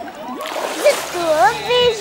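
A splash of water about half a second in, then a voice begins singing with a rising, wavering pitch.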